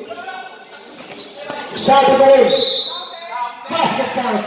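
Players and onlookers shouting during a basketball game, with a basketball bouncing on the court floor. Sharp thuds come about two seconds in and again near the end.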